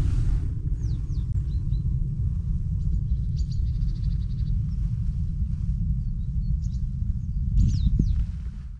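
Birds chirping in a field, short calls and a rapid trill of repeated notes about three seconds in, over a steady low rumble of wind on the microphone.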